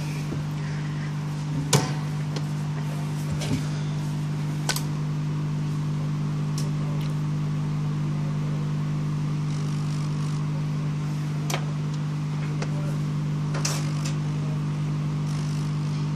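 Hot air rework station running, a steady low hum with a faint hiss of airflow, set to about 350 °C to desolder a phone's charging socket. A few light clicks and taps of handling come through the hum.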